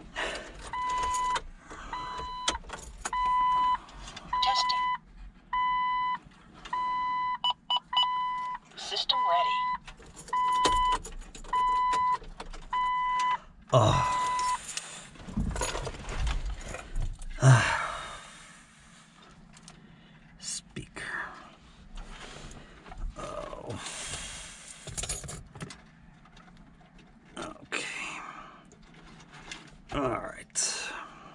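A car's dashboard warning chime beeping steadily at one pitch, a little faster than once a second, for about fourteen seconds after the ignition is switched on, then stopping. A couple of sharp knocks follow, then handling noise and clicks.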